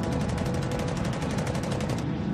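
Rapid automatic machine-gun fire, a steady stream of about a dozen shots a second, with a low steady drone underneath.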